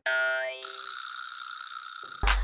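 Cartoon-style transition sound effect: a short twangy tone that rises in pitch over about half a second, then settles into a high steady ringing tone that holds, a little quieter.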